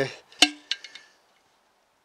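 A sharp metallic click with a short ring, then a few lighter clicks, as metal parts of the engine's valve gear are moved by hand.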